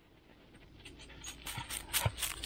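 A dog coming up through tall grass close to the microphone: faint rustling and short clicks start about a second in and grow louder toward the end.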